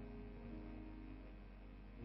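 Faint background music of soft, held chords, with a note changing about halfway through.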